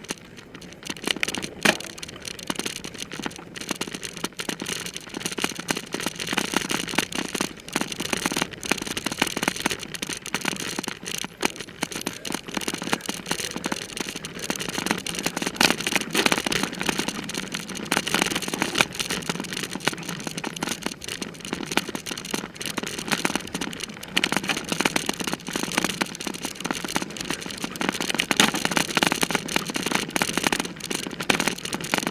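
Bicycle ridden hard over a rough dirt and grass trail: a steady, dense rattling and crackling from the bike and the jolting camera mount, over tyre noise on the dirt.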